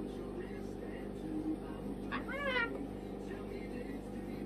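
A cockatoo giving one short, wavering, mewing call about two seconds in, over a steady low room hum.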